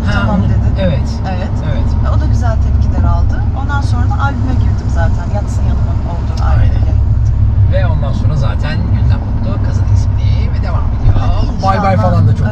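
Talking inside a moving car's cabin over the steady low rumble of the engine and tyres on the road.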